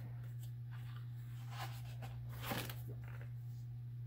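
Soft paper rustles and swishes as a large page of a spiral-bound coloring book of heavy 80-pound cardstock is handled and turned, over a steady low hum.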